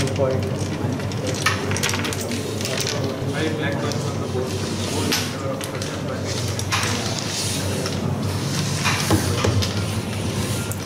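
Murmur of background voices in a large hall, with the clicks and scraping of wooden carrom coins being swept together and stacked on the board. The sharpest clicks come at about a second and a half in, midway and near the end.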